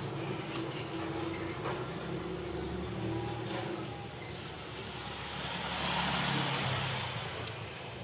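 Steady low background engine and traffic noise that swells and fades about six seconds in, with one sharp click near the end.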